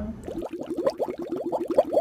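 Drinking through a straw from a tumbler: a quick, even run of bubbling gurgles, about ten a second.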